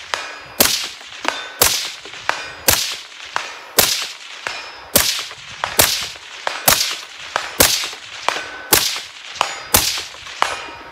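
Rifle shots fired in steady succession, about one a second, about ten in all. Each shot is followed about half a second later by the fainter clang of a distant steel target being hit and ringing.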